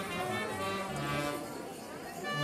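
Brass band playing a melody of held notes.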